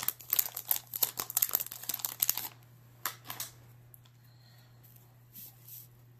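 Plastic wrapper of a pack of baseball cards being torn open and crinkled, a dense run of crackles for about the first two and a half seconds, then a few faint rustles as the cards are handled.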